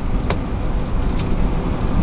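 A car on the move, heard from inside the cabin: a steady low rumble of road and engine noise, with two brief clicks.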